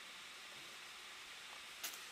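Faint steady hiss of room tone, with one brief light rustle near the end as a boxed vinyl figure's cardboard-and-plastic box is handled.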